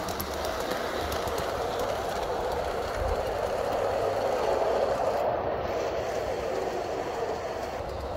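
Model train running on its track: the electric locomotive's motor and gearing hum steadily with the wheels rolling over the rails and a few faint ticks, swelling a little around the middle.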